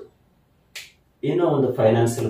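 Speech: a pause, broken by one brief high hissing tick just under a second in, then a man talking from about a second in.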